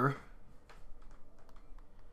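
A few faint, scattered clicks of computer keyboard keys.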